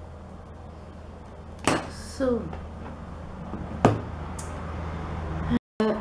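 Two sharp knocks of objects set down on a tabletop, about two seconds apart, over a steady low hum. Just after the first knock comes a short voice sound that falls in pitch.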